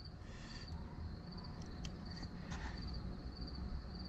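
Insects chirping in a steady, high, pulsing rhythm, with a few faint scrapes from the edge of a nail trimmer drawn along the underside of a dog's toenail.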